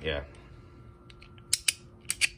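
Knipex Cobra water pump pliers clicking as the push-button-adjusted jaw is slid through its notched positions: three sharp metal clicks in quick succession near the end.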